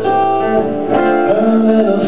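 Acoustic guitar played live, accompanying a slow song.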